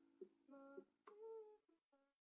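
Faint closing notes of the song's guitar backing: a handful of soft, separate plucked notes, each ringing briefly.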